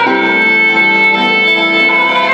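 Street band playing an instrumental: a violin holds one long note over acoustic guitar and keyboard accompaniment.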